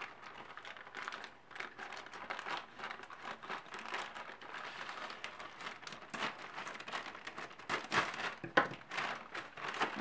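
Plastic mailer bag crinkling and crackling as it is handled and cut open with scissors, with a few louder crackles near the end.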